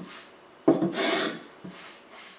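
A hand sweeping across a hand-carved oak stool seat, rubbing over the wood and through curled shavings in separate strokes. There is a short stroke at the start, a longer, louder one just under a second in, and a brief one near the end.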